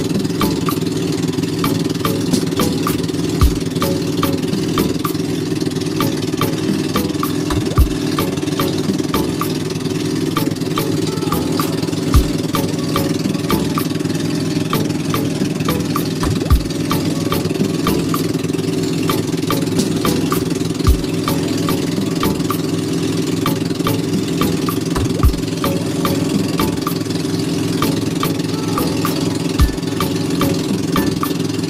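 An engine running steadily at an even speed, with a low thump about every four seconds.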